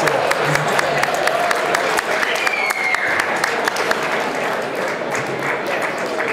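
Crowd applauding, with voices talking and calling out over the clapping; a single high falling cheer rises above it about two seconds in.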